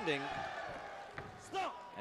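A short thud as a kickboxer is thrown down onto the ring floor, thinly padded over wood and steel. It comes about a second in, over fading hall noise.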